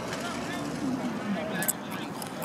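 Distant voices of youth soccer players and spectators calling out, with one sharp click near the end.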